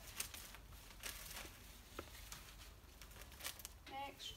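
Clear plastic bag crinkling faintly as it is handled and wiped down with an alcohol wipe in gloved hands, in short, scattered rustles.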